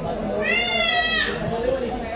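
A single high-pitched, drawn-out shout lasting under a second, about half a second in, over other voices.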